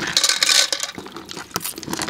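Sea snails poured from a plastic bowl into an enamel pot of shallow water: a quick clatter of shells clinking against each other and the pot, with splashing, thinning out to scattered clicks and a few last shells dropping in near the end.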